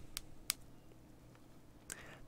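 A few short, faint clicks from a Nissan smart key fob being handled, its buttons pressed under the thumb, the clearest about half a second in.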